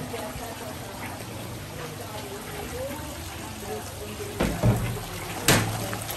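Steady trickling and sloshing of water in a shallow crayfish pond. Two sharp knocks, about a second apart near the end, are the loudest sounds.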